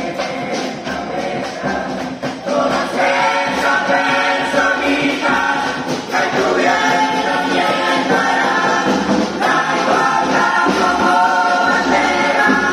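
A murga chorus of young voices singing together in full chorus, growing louder about three seconds in.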